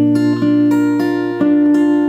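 Acoustic guitar being fingerpicked: a low bass note rings under single plucked notes on the upper strings, a new note about every third of a second, each ringing on into the next.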